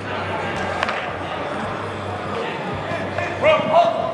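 Sports hall ambience: a steady low hum with background chatter in a large reverberant indoor space, a single sharp knock about a second in, and a voice calling out near the end.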